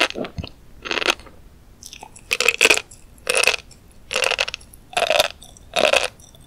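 Close-miked chewing of a mouthful of flying fish roe (tobiko), the small eggs crunching in a steady rhythm of short bursts, a little more than one a second.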